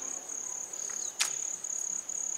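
Crickets trilling steadily at a high pitch, with one sharp click a little over a second in.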